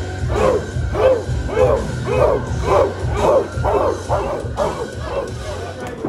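Entrance music with a steady low beat, laid over with a run of dog barks, about two a second, that grow weaker near the end.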